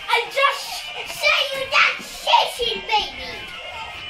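Young children's voices in short, loud, excited bursts while playing, high-pitched and without clear words.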